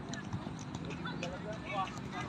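Footballs being dribbled on grass: soft, irregular thuds of ball touches and footsteps, with distant voices calling.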